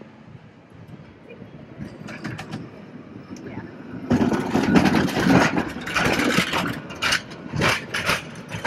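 A San Francisco Powell–Hyde cable car approaching and passing close by. It gets louder over the first few seconds, then from about four seconds in turns into a loud rumble with rattling and clattering as the car goes by.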